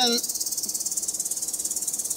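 Cold helium gas hissing steadily out of the open end of a liquid-helium transfer line as the line is purged and pre-cooled, the hiss fluttering fast and evenly.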